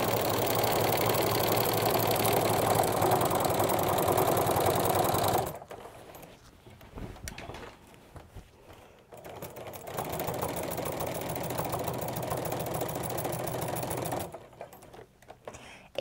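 Home sewing machine with a walking foot stitching through the layers of a quilt in two runs. The first run lasts about five seconds, then comes a pause of about four seconds, and the second run, somewhat quieter, stops about two seconds before the end.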